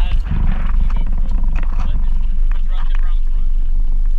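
Loud, steady low rumble of wind and boat noise on a small open skiff in choppy water, with muffled voices over it.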